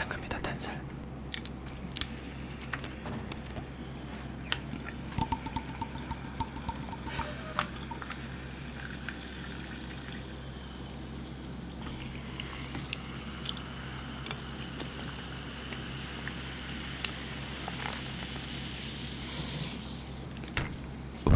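Sparkling water poured from plastic bottles into glasses, with scattered clicks and taps of bottles and glassware, then a steady fizzing hiss over the second half.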